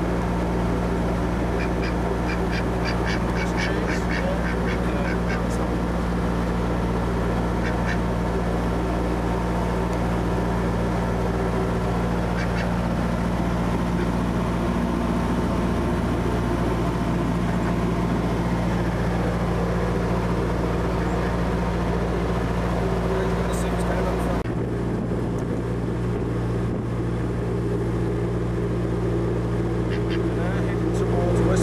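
A narrowboat's engine running steadily under everything, with a white domestic duck quacking: a quick run of calls a few seconds in, then a few single quacks later.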